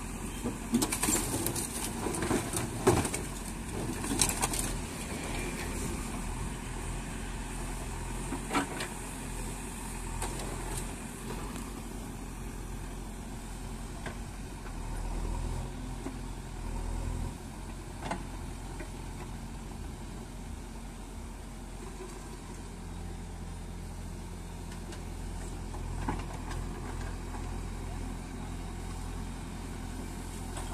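JCB backhoe loader's diesel engine running steadily, with a cluster of sharp knocks and clanks in the first few seconds as the wrecked car body is handled and set down. A few single knocks follow later.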